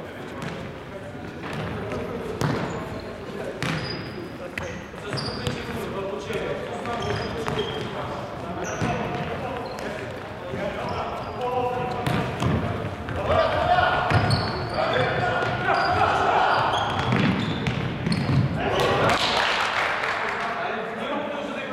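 Futsal being played on a wooden sports-hall floor. The ball is kicked and bounces with sharp knocks, shoes squeak, and players call out to each other, all echoing in the hall. The shouting gets louder in the second half.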